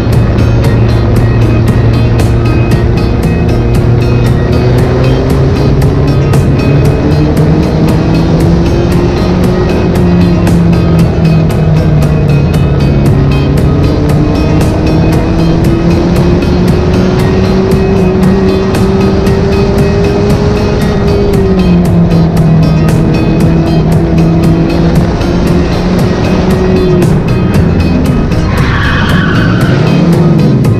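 Onboard sound of a Mod 4 open-wheel race car's four-cylinder engine at racing speed, its pitch climbing on the straights and dropping off into the turns. Near the end a brief tyre squeal comes as the car slides off the track.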